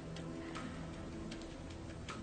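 Soft sustained background score, with a few faint, irregularly spaced clicks over it.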